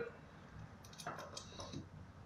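Faint clicks and crinkles of aluminium foil and an aluminium coffee capsule being handled, a short cluster of them about a second in.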